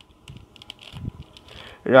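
Plastic clicks and clacks of a 3x3 mirror cube's layers being turned by hand: a scatter of light, irregular taps with a soft knock about a second in.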